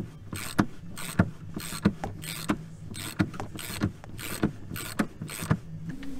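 Socket ratchet wrench being worked back and forth on a chainplate bolt, its pawl clicking in short bursts with each stroke, roughly twice a second.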